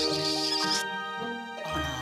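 Cartoon background music with steady held notes, and a kiss sound effect in the first second.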